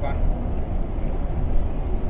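Steady low rumble of a semi-truck's engine and tyres, heard from inside the cab while cruising on the highway.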